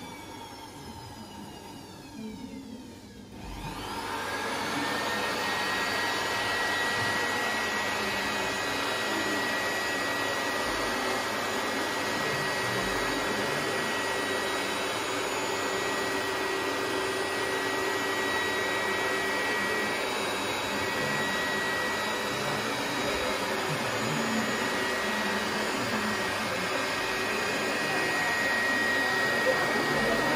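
Handheld electric air blower winding down with a falling whine, then starting up again about three and a half seconds in and running steadily with a high whine, its airstream holding a balloon aloft.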